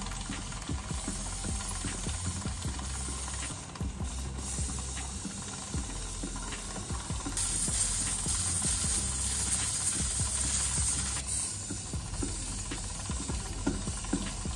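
Aerosol chain lubricant spraying onto a motorcycle's drive chain, a steady hiss that grows louder for about four seconds in the middle, with light clicks from the chain.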